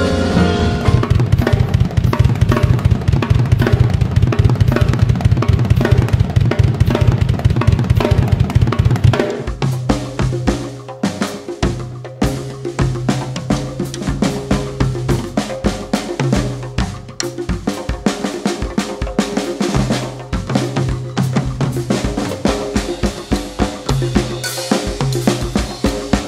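Live drum kit playing. For the first nine seconds or so it is a dense, fast barrage of snare, kick and cymbal hits. After a cut it becomes a looser, spaced-out groove on a second kit, with a held low note sounding underneath in stretches.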